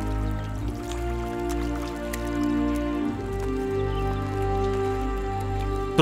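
Soft background music of sustained, held chords over a low drone, the chords changing about halfway through, with faint trickling water beneath it.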